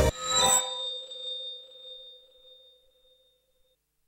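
A single bell-like chime, struck just as the background music cuts off, rings out with a few clear tones and fades away over about three seconds.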